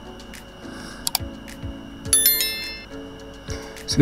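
Soft background music with a low beat, with a couple of sharp click sound effects about a second in and then a bright, bell-like notification ding of several ringing tones about two seconds in: the sound effects of an animated like-and-subscribe button overlay.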